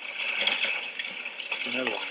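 Steady hiss of rain and wind from storm footage of a tornado. A voice briefly says "Another one" near the end.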